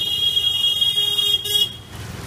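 A high-pitched vehicle horn honking on a busy street: one long, steady blast, then a short second one just after it.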